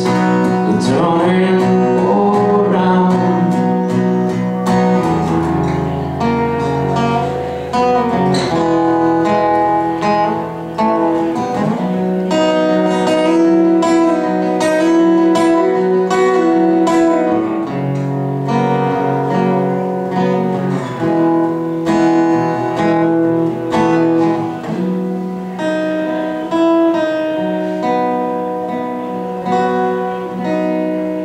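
Acoustic guitar played live, sustained chords and picked notes ringing and changing every second or two.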